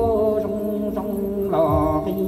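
A man singing Hmong kwv txhiaj, a chanted sung poem, through a microphone and PA, holding long wavering notes over a backing track with a slow low beat.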